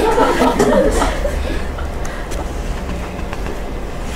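Brief laughter in the first second or so, then a pause filled by a steady low rumble and faint room hiss.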